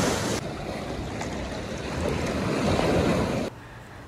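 Ocean surf washing onto a beach, a steady rushing that swells and eases, with wind on the microphone; it cuts off suddenly about three and a half seconds in.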